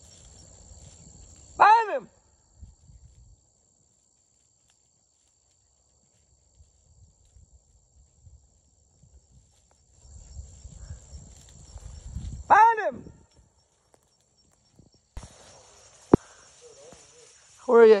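A beagle barks twice, single short barks about eleven seconds apart, while working rabbit scent in brush. Rustling through the brush comes just before the second bark, and a steady high-pitched insect drone runs underneath.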